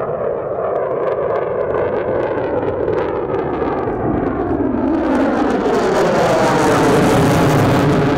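An F-35 fighter jet's single turbofan engine running at high power with afterburner lit as the jet flies past during aerobatic manoeuvres. The noise grows louder and hissier in the second half, with a sweeping shift in pitch as it passes.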